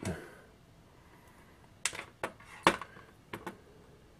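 A few sharp clicks and clinks, about five in under two seconds starting about two seconds in, the loudest near the middle: wires with crimped spade connectors and a heatsink-mounted power transistor being handled on a workbench.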